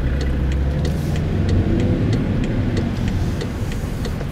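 Car running in city traffic, heard from inside the cabin: a steady low engine and road hum, with a light ticking about three times a second.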